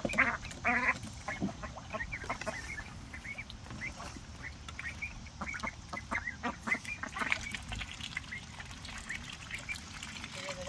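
A small group of domestic ducks quacking and chattering: two louder quacks right at the start, then many short, soft calls in quick succession.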